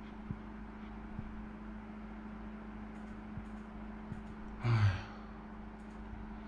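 A short breathy sigh near the end, over a steady low room hum with a few faint clicks.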